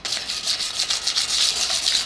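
Hand sanding a shiny metal lamp base with 150-grit sandpaper: quick back-and-forth strokes of the paper rasping over the metal, scuffing the glossy finish so primer will stick.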